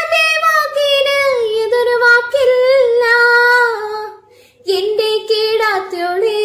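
A girl singing a Malayalam folk song (naadan paattu) solo, without accompaniment, in long held phrases. She breaks once for a short breath a little after four seconds in.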